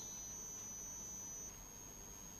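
Faint room tone: a low steady hiss with a thin high-pitched tone that cuts off about one and a half seconds in.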